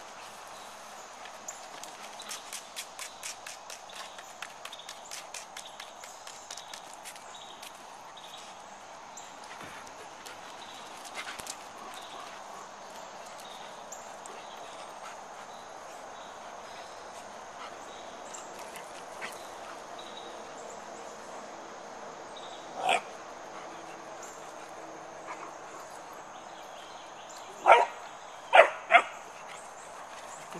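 Dogs barking during rough play between a basset hound puppy and a goldendoodle: one bark about two-thirds of the way in and three sharp barks close together near the end, after a run of quick light clicks in the first several seconds.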